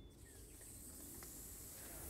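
Pop-up spray sprinkler head turning on: a faint hiss of water spray that builds gradually.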